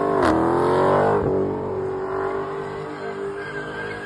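Purple Dodge Charger Hellcat's supercharged V8 revving high while the rear tyres spin in a smoky burnout donut. The engine pitch dips briefly just after the start, climbs back over the next second, then holds high and steady as it grows a little quieter.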